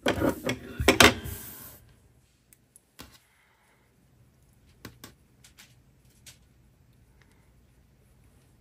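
Hands handling yarn and a chunky crocheted scarf on a tabletop: a rustling burst with a few sharp knocks in the first two seconds, then faint scattered taps and rustles as a tassel tie is threaded through the crochet stitches.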